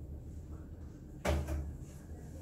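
A single dull knock about a second in, with a lighter knock right after it, over faint room noise.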